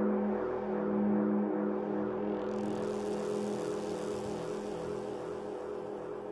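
A steady drone of several low held tones, slowly fading, with a faint hiss coming in about halfway through.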